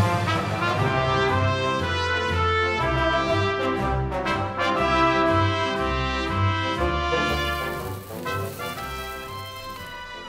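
Background music led by brass instruments over a bass line, with notes held and changing at a steady pace. It gets quieter over the last couple of seconds.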